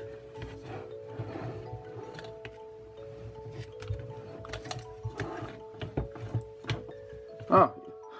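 Background music with steady sustained notes, over scattered clicks and knocks from the plastic drum and frame of a Parkside cable reel being turned and handled while its handbrake is tried. A short exclamation comes near the end.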